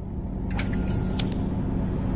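Steady low hum of a car heard from inside its cabin, with a brief rushing hiss about half a second in.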